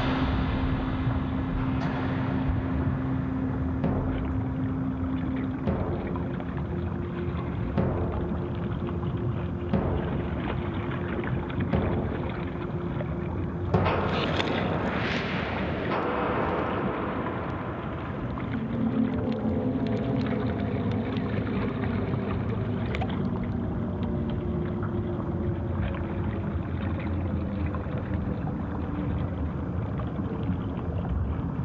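A steady low rumble with held low tones. About fourteen seconds in there is a sudden splash, with a rush of bubbles that fades over a couple of seconds, as something drops into the water.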